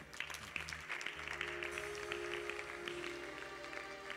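A congregation clapping, many quick overlapping claps, over soft instrumental music holding sustained chords with a low bass line.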